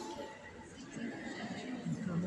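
Indistinct voices of visitors talking and calling out.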